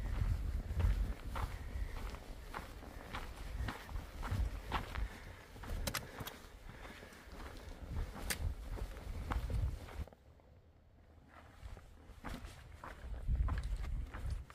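Hikers' footsteps on a dirt and rocky trail with irregular sharp clicks of trekking-pole tips striking the ground, over a low rumble. It goes quieter for a couple of seconds about ten seconds in.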